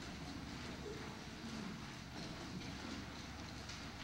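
Quiet room tone: a steady low hum and faint hiss.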